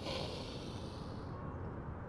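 A woman's audible inhale through the nose, a soft hiss that fades out after about a second, over a faint low background rumble.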